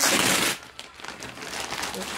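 Packaging crinkling and rustling as an item is handled and unwrapped: a loud burst in the first half second, then lighter crackling.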